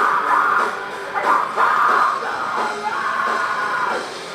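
Live metal band playing loud distorted electric guitars, bass and drums, with a vocalist yelling into the microphone.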